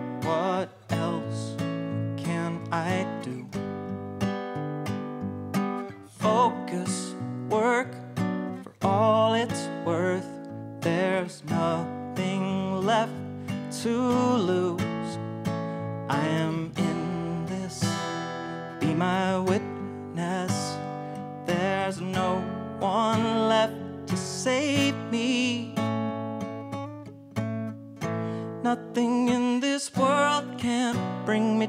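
Steel-string acoustic guitar strummed and picked in a steady rhythm, playing the instrumental part of a song.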